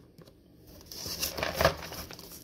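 A cardboard box of bullets being picked up and turned over: a few light clicks, then rustling and scraping of the cardboard that swells toward the end.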